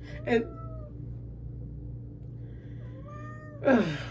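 Domestic tabby cat meowing while being held, with faint drawn-out meows about half a second in and again near the end.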